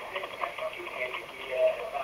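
A support agent's voice over a mobile phone's loudspeaker, thin and narrow in range, the words indistinct.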